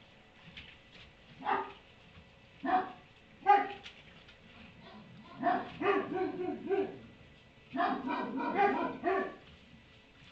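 A dog barking off and on: three single barks in the first four seconds, then two quick runs of barks.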